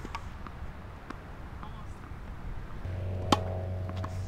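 A tennis ball struck once by a racquet about three seconds in, a single sharp pop, after a few faint taps of ball on racquet or court. Just before it a low steady hum with a few held tones comes in and carries on.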